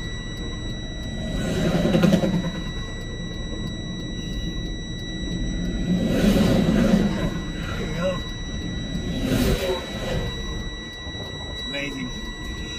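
Truck's dash warning alarm sounding a steady high beep tone inside the cab, the engine-protection warning for an engine shutdown in progress. Under it a low engine and road rumble swells and fades three times.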